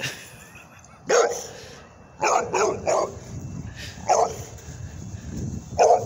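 A dog barking in play: one bark a little after a second in, a quick run of three just after two seconds, another past four seconds, and one more at the end.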